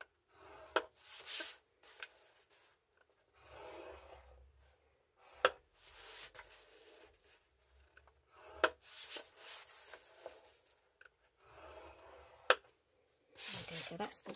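Stylus drawn along black cardstock in the grooves of a scoring board: a series of short scraping strokes, with a few sharp clicks between them as the card is handled.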